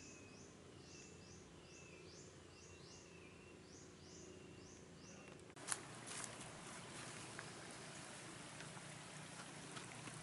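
Faint, repeated short high chirps from forest wildlife, about two a second. About halfway through this cuts abruptly to a sharp click, then a steady rustle of footsteps and plants brushing against the moving camera in undergrowth.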